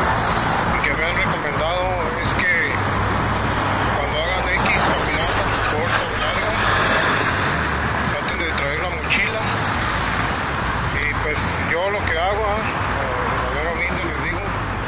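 Road traffic noise: the steady low running of engines and tyre noise from a line of slow-moving cars and trucks passing close by.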